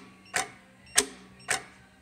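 Juki LK-1900 bar-tacking machine's clamp lift mechanism clacking as the step motor drives the work clamp up and down: three sharp clicks about half a second apart, over a faint steady hum.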